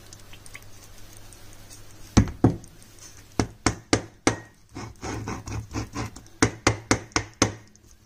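A filled glass jar knocked down again and again on a plastic cutting board: about fifteen sharp, irregular knocks starting about two seconds in and stopping shortly before the end.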